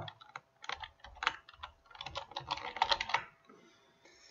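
Computer keyboard being typed on: an irregular run of quick keystrokes for about three seconds, then stopping.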